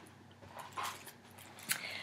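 Faint rustling and a few soft clicks of a cardboard shoe box being opened and handled, with one sharper tick near the end.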